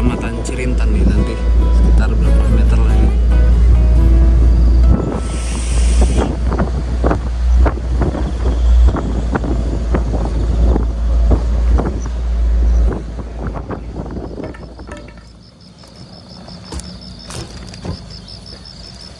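Wind rushing over the microphone and the running of an Isuzu Elf minibus, heard from its roof, with rattling knocks and background music. About thirteen seconds in, the wind and vehicle noise fall away, and near the end an insect chirps in an even, rapid rhythm.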